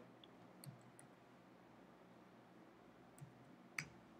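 Near silence with a few faint computer keyboard clicks, the loudest near the end.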